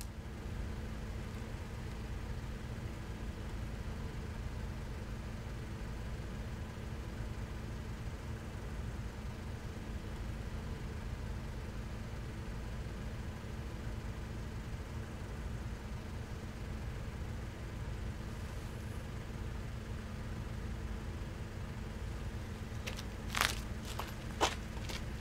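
Car engine idling: a steady low rumble with a faint hum. A few sharp clicks come just before the end.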